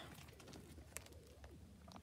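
Near silence: room tone, with one faint click about a second in.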